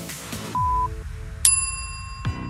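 Workout interval timer finishing its countdown: a short electronic beep about half a second in, the last of a once-a-second series, then a bright bell-like ding about a second later that signals the start of the next work interval.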